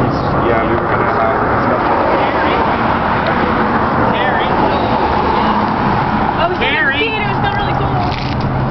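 Steady road traffic noise from a highway, with people talking over it; a few higher-pitched voices stand out about halfway through and near the end.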